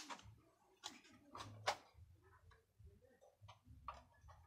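A few faint, irregular clicks and taps, the sharpest one a little before the middle, over a faint low rumble.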